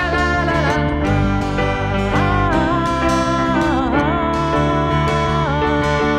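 Rock band music in an instrumental break: a lead guitar line bending and sliding in pitch over bass and a steady drum beat.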